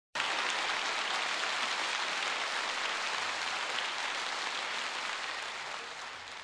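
Audience applauding steadily, the clapping tapering off slightly near the end.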